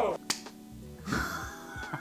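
A man's laughter trailing off over quiet background music, with one sharp click about a third of a second in and a softer laugh or breath in the second half.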